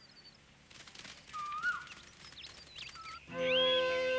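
Soundtrack ambience of short birdlike whistling calls and chirps over a faint rustle. Background music swells in a little over three seconds in.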